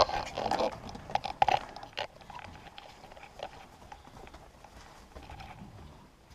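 Pigs grunting and squealing in a pen, loudest in the first two seconds along with knocks and rubbing from the camera being handled, then quieter with scattered small clicks.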